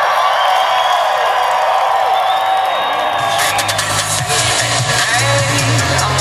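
Live concert crowd cheering and whooping between songs. About halfway through, a bass-heavy beat with drums starts up from the band over the cheering.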